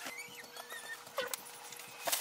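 Faint handling sounds from printer packaging: two short high squeaks in the first second and a single light tap a little past the middle.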